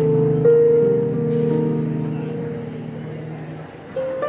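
Celtic harp played by hand. A few low plucked notes come in during the first second or so, then the notes ring on together and slowly fade away near the end.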